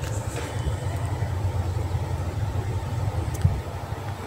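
Low, steady background rumble with no speech, and a faint click about three and a half seconds in.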